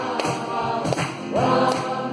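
Live kirtan: voices singing a devotional chant together over strummed acoustic guitar and a hand drum.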